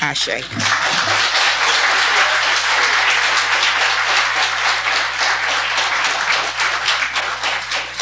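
An audience applauding: dense, steady clapping that starts at once and begins to thin out near the end.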